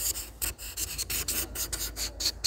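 Felt-tip pen scratching across paper in quick, irregular strokes as cursive letters are written, with short breaks where the pen lifts.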